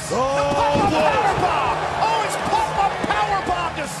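Excited shouting and exclaiming voices over a slam, as a wrestling move lands in a stop-motion action-figure match.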